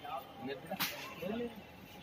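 Low-level outdoor field audio with scattered voices of people talking in the background, and one sharp crack about halfway through.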